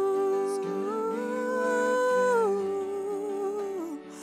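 A woman's voice sings a slow worship melody in long held notes over sustained chords from a Yamaha S90XS keyboard. The voice steps up about a second in, holds, comes back down around halfway, and slides lower near the end.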